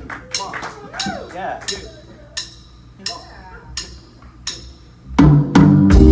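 Sparse, separate drum and percussion strikes, about two a second, with a few voices in the audience, as a live band counts into a tune; about five seconds in the full band comes in loud with a sustained Hammond organ chord over bass and drums.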